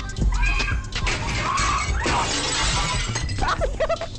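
A glass pane shattering, a loud spray of breaking glass lasting about two seconds, with music playing underneath. Short pitched cries follow near the end.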